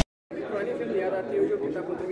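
A man talking, with other voices chattering behind him. It begins after a short silent gap at the start.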